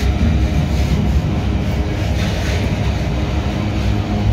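Freight train wagons loaded with steel pipes rolling past close by: a steady heavy rumble of steel wheels on the rails.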